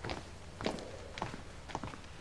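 Footsteps of a man in dress shoes walking across a room, about two steps a second.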